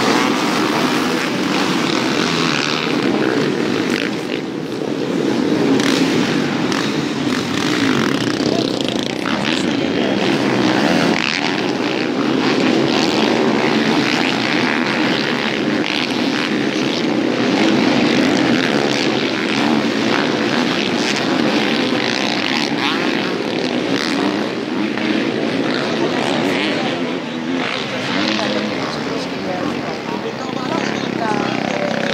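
Many motocross bike engines revving together as a full race field rides off after the start, a loud, continuous engine noise with no break.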